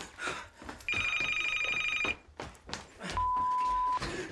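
A telephone rings once with a fast electronic trill for about a second. Near the end comes a steady, high single-tone beep, like an answering machine's beep before it records a message.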